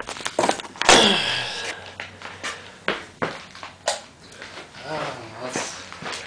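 Handling noise as a camera is moved and set down on a concrete floor: a run of knocks, clicks and rubbing, the loudest about a second in. The vacuum cleaner's motor is not running.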